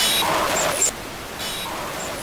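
Closing record-label logo sting: a sound effect of noisy hiss, louder for the first second and then dropping back, with a few faint high chirps.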